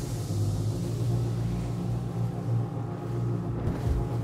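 175-horsepower Suzuki outboard on a rigid inflatable boat running steadily at wide-open throttle, near 4,700 rpm, with a hiss of water and spray over it.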